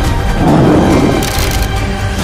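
Horror trailer soundtrack: held music tones under a loud, rough sound effect that swells about half a second in and dies away within a second.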